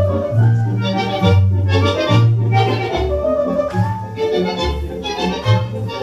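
Argentine tango music, with bandoneon melody lines over a bass line that steps from note to note.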